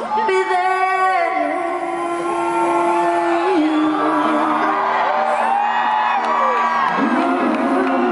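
Live pop-soul duet: female and male singers trading ad-libbed vocal runs with held accompaniment notes underneath. Audience whoops and cheers come through in a large hall.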